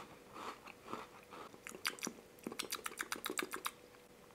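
Close-up chewing and crunching of the crisp chocolate biscuit layer of a Fazer Domino Mini cookie, eaten on its own without the filling. Softer at first, then a quick run of crisp crunches in the second half.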